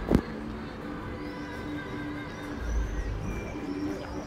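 A short, sharp hit right at the start, then outdoor ambience with pigeons cooing over and over and small birds chirping high above.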